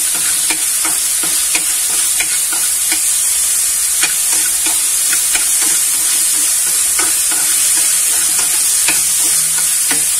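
Shrimp and pork pieces sizzling in a frying pan, a steady hiss, while chopsticks stir them, tapping and scraping against the pan about every half second.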